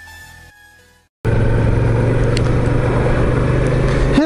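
Electronic intro music fading out, a brief gap, then a Suzuki SV650S V-twin motorcycle cruising at a steady speed, heard from on board: a constant engine note under a rush of wind and road noise.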